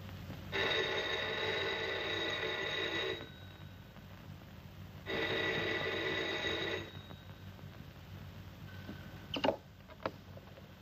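Telephone bell ringing twice, a long ring then a shorter one, followed near the end by a brief clatter as the handset is lifted from its cradle.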